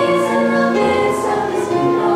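Mixed high school choir singing a choral anthem in sustained chords, the harmony shifting every half second or so, with a few crisp 's' consonants cutting through.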